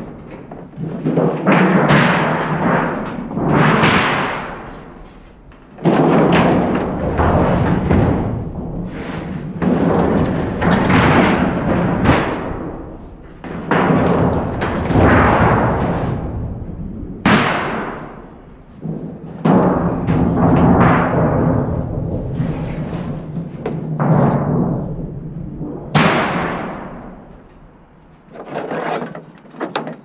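Thin galvanized sheet-metal ductwork being dragged out of a pickup bed and tossed onto a scrap pile: repeated clangs, scrapes and ringing of sheet steel, one piece after another.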